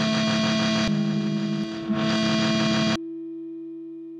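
Soundtrack music with sustained distorted tones over a fast repeating pulse. About three seconds in it cuts off abruptly, leaving a held chord that slowly fades.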